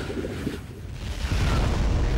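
Deep, rumbling explosion sound effect that swells louder about halfway through.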